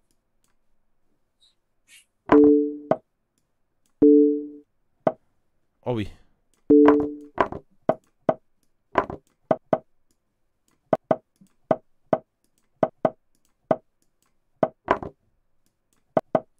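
Rapid run of chess move sounds from an online chess board in a blitz time scramble: short sharp clicks, about two a second through the second half. Three short two-note electronic beeps come in the first seven seconds.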